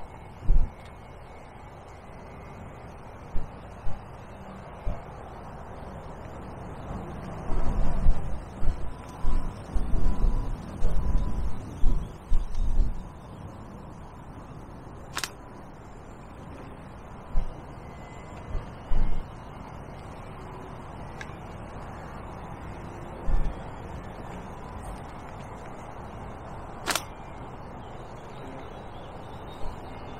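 Wind buffeting the microphone in irregular low gusts, heaviest for several seconds in the first half, with a couple of sharp clicks later on.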